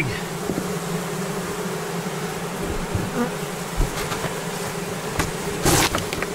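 A honeybee colony buzzing in a steady hum over an open hive, the bees disturbed as the propolis-sealed linen cover cloth is peeled back off the frames. A short, louder noise comes near the end.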